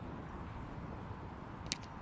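Faint open-air ambience, with a single sharp crack of a cricket bat striking the ball near the end.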